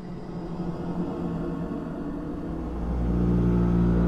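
A low, steady droning rumble with a held, unchanging pitch that swells in loudness. A deeper rumble comes in about two and a half seconds in.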